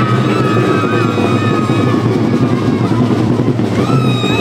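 A school marching band playing: a steady low note held under a wavering melody line.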